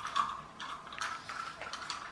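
Irregular light plastic clicks and taps as a small plastic solar wobbler figure is picked up, moved and set down on a table.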